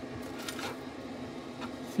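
Cooling fan of a Fanttik EVO 300 portable power station running steadily with a low, even hum, switched on because the AC inverter outlets are enabled. A couple of faint clicks sound over it.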